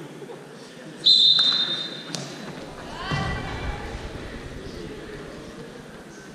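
Referee's whistle, one short steady blast about a second in, restarting the wrestlers from the referee's position on the mat. It is followed by a thud and a voice in the gym.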